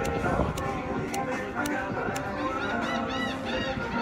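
Music with a steady beat of about two sharp clicks a second, with a quick run of short, high, honk-like calls in the second half.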